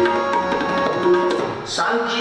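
Tabla playing a steady rhythm of strokes over held notes from two harmoniums, as accompaniment to shabad kirtan. Near the end a singing voice comes in.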